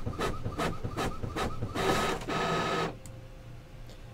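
A printer running, with a quick, even, rhythmic chatter over a steady whine. It stops about three seconds in.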